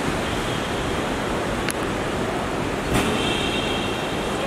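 Steady rushing background noise outdoors, with a single short click about halfway through and a faint high tone near the end.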